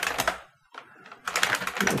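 Computer keyboard typing: a quick run of key clicks, a short pause about half a second in, then another run of keystrokes.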